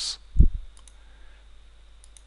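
Computer mouse being clicked: a short dull thump about half a second in, then two faint clicks.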